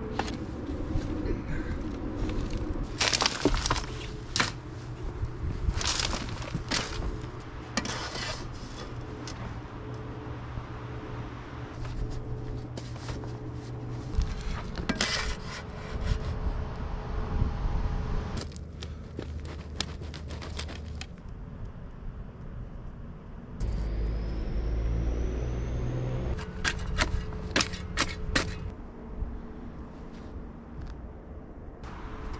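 Hands and a level scraping and tapping in a trench as crumbled dirt is packed under a PVC sewer pipe to set its slope, with irregular scrapes, crumbles and knocks.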